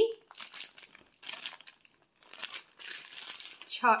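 A clear plastic zip-top bag full of wrapped candies being handled, the bag and the candy wrappers crinkling and rattling in irregular bursts.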